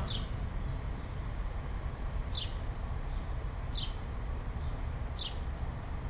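A bird's short downward chirp, repeated evenly about every second and a half, over a steady low outdoor rumble.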